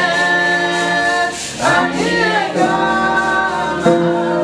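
Unaccompanied singing of a worship song, led by a woman singing into a microphone, with long held notes and a sliding change of pitch about halfway through.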